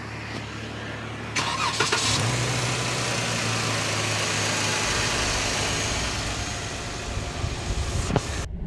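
Jeep Wrangler JK's 3.6-litre Pentastar V6 idling steadily with the hood open, sounding smooth. About a second and a half in there is a brief burst of noise, and the engine sound is louder from then on.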